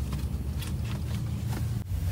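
Steady low hum of an idling semi-truck diesel engine heard inside the cab, with a brief dropout near the end.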